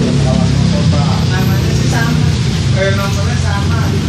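Steady low rumble of an engine running, with indistinct voices over it.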